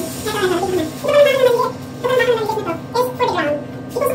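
A person's voice over steady background music.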